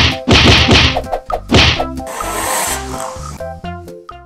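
A run of loud slap-like whacks, about four in the first two seconds, timed to one cat swatting at another, over light background music. A short hiss-like noise follows a little after two seconds.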